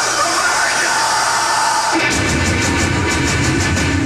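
Noise of the concert crowd in the hall. About halfway in, a live heavy metal band starts playing loudly, with heavy low guitars and drums and cymbals hit about five times a second.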